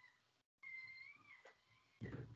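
Faint, drawn-out, high-pitched call lasting a little over a second, with a slight dip in pitch partway through.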